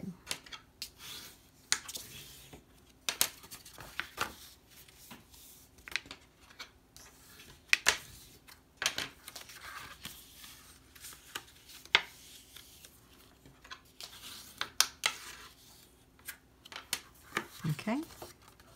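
Scored cardstock being folded and creased by hand along its score lines, with sharp crisp snaps at irregular intervals between soft paper rustling.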